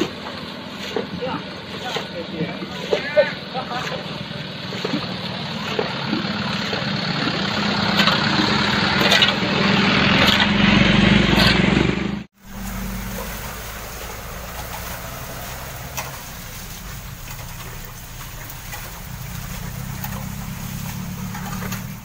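Traffic passing on a wet road, with indistinct voices, the noise swelling to a loud pass about 12 seconds in before cutting off abruptly. Then a steady low engine drone carries on.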